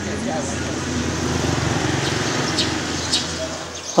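Street traffic noise with a motorbike engine running steadily, and faint voices in the background.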